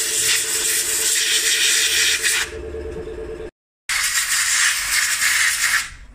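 Compressed air hissing in long blasts at the diesel injector bore of a BMW engine, blowing out loose carbon deposits, with a steady low hum under the first blast. The hiss breaks off a little past halfway, then a second blast follows.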